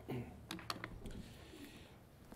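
A few light knocks and clicks in quick succession, most in the first second, as a hymnal is picked up and handled at a wooden pulpit close to its microphones.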